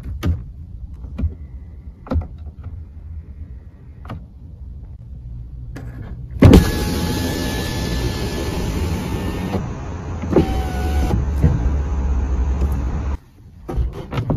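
Electric window of a Volkswagen Lavida: a few light clicks at the door switch, then about six seconds in a sharp thump as the motor starts. The window motor runs with a steady whine for about seven seconds and stops suddenly.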